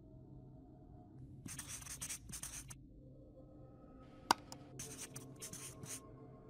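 Marker pen writing in a series of short scratchy strokes, starting about a second and a half in, with a single sharp tick in the middle of the run.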